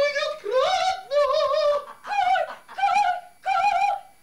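A high voice singing opera-style: about six short held notes, each with a wide, wavering vibrato, separated by brief breaks.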